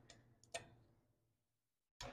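One short, faint click about half a second in from a click-type torque wrench breaking over as a gear reduction cover bolt reaches its set torque, with a tiny tick just before it.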